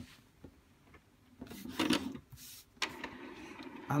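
Epson XP-442 inkjet printer starting its print-head cleaning cycle: after a short quiet, its mechanism starts up about a second and a half in, then runs steadily. The cleaning is run to clear partly blocked nozzles that left missing dots in the magenta and yellow on the nozzle check.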